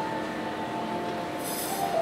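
Live violins and double bass playing a quiet passage of long held, squealing-high notes, with a brief bright shimmer about one and a half seconds in.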